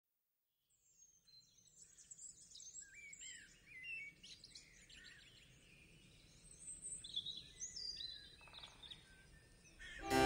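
Faint birdsong: many short chirps and whistles, some sliding up or down in pitch, starting about a second in.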